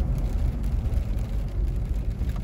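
Steady low rumble of a Mahindra Thar driving, engine and road noise heard from inside the cabin.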